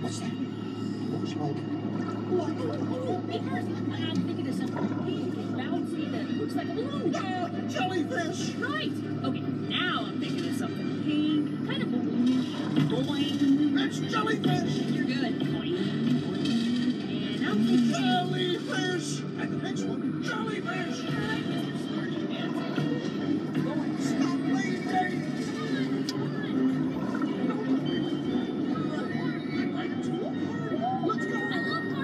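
Ride soundtrack music playing continuously, with indistinct voices over it.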